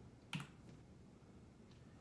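A single computer-mouse click about a third of a second in, otherwise near silence.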